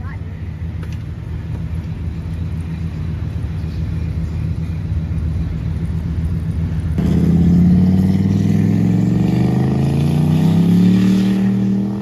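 A car engine running steadily, then much louder from about seven seconds in as an engine accelerates, its pitch rising slowly.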